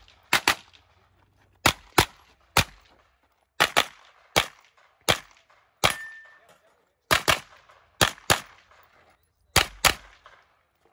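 A carbine firing a rapid string of shots, many of them in quick pairs, with short pauses between groups as the shooter moves from target to target. About eighteen shots in all.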